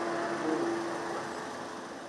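Outdoor street traffic noise: a steady wash of noise with a faint steady hum, gradually fading out.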